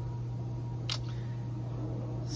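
A single short click about a second in, from a fingertip tapping a tablet touchscreen, over a steady low hum.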